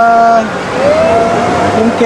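A man's voice singing long held notes: one note breaks off about half a second in, then a new note slides up and is held for about a second.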